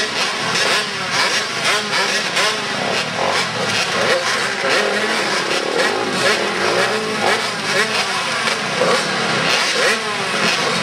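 Several small pit bike engines revving up and down over one another as they race around a dirt track.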